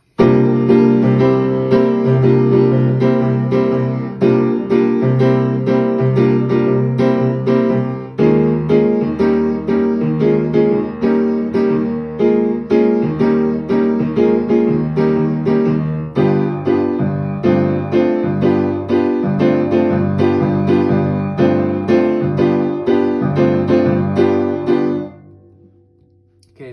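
Steinway piano playing a swung, light rock chord pattern in three pairs of repeated chords: G minor 7 to C7 over a C bass, then B-flat minor 7 to E-flat 7 over an E-flat bass, then D minor 7 to G7 over a G bass. The bass moves down about 8 seconds in and again about 16 seconds in, and the last chord fades out near the end.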